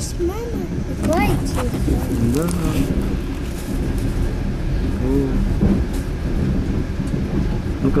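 Steady low rumble of a moving passenger train heard from inside a sleeper compartment, with a few short bits of quiet speech over it.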